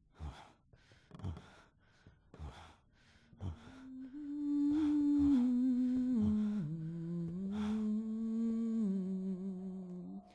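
A person humming a slow, low tune from about four seconds in, with long held notes that step down in pitch. Before it come four short, soft sounds about a second apart.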